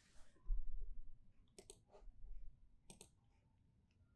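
Computer mouse clicking: two quick double clicks, about a second and a half apart. Low dull thumps come before each, the first about half a second in being the loudest sound.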